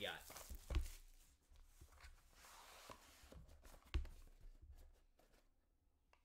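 Plastic wrap on a trading-card box being pulled off and handled, a faint rustle, with two sharp knocks, one under a second in and one about four seconds in.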